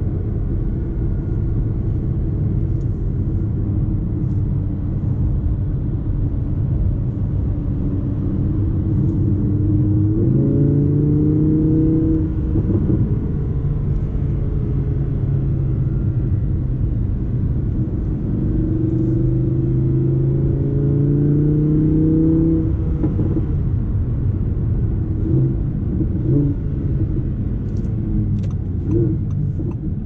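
Audi R8 V10 Plus's naturally aspirated 5.2-litre V10 heard from inside the cabin over steady tyre and road rumble, at moderate speed. About ten seconds in, the engine note jumps higher as the gearbox drops a gear. It climbs again from about eighteen seconds and falls back with an upshift a few seconds later; a few light clicks come near the end.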